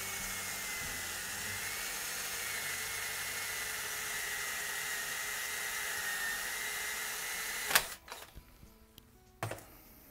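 Cordless drill running at a steady speed, drilling the oil hole through a rocker-arm bushing held in a jig, with an even motor whine. It stops abruptly with a sharp click near the end, followed by a single light knock.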